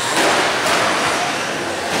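Radio-controlled 2WD short-course trucks running on an indoor dirt track: a steady hiss of motors and tyres, with a couple of sharp knocks within the first second as a truck tumbles and hits the dirt.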